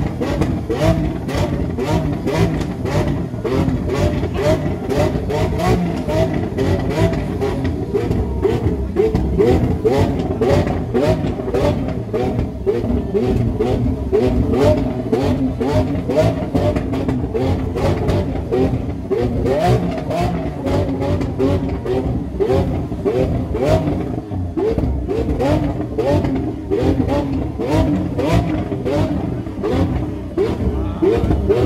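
Lamborghini Aventador's V12 running at a standstill, its exhaust note rising in short revs again and again, with a crowd chattering.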